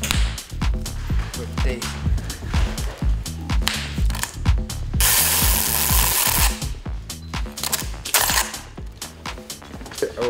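Background music with a beat and a stepping bass line under a string of short pops and clicks from bubble wrap pressed by hand. About five seconds in, a loud rasp lasting about a second and a half, from packing tape being pulled off its roll.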